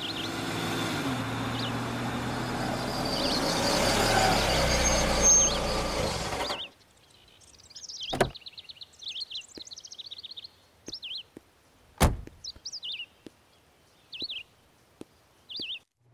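Ford Fiesta sedan pulling in and slowing to a stop, its engine note falling, then cutting off abruptly about six and a half seconds in. Birds chirp afterwards, with two sharp knocks.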